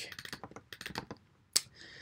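Typing on a computer keyboard: a quick run of light key clicks, then a pause and one sharper keystroke about a second and a half in.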